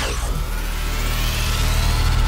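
Logo-intro sound effect: a swelling rush of noise over a deep rumble, growing steadily louder.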